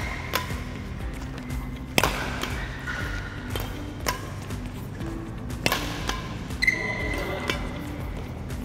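Badminton rackets striking shuttlecocks in a multi-shuttle drill: sharp, single hits every second or so, with background music playing underneath.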